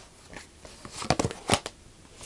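Tarot cards being handled: the deck picked up and cards slid and flicked off it, a short run of clicks and snaps about a second in.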